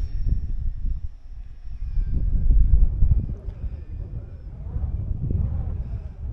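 Wind buffeting the microphone: a gusty low rumble that swells and fades, strongest in the middle.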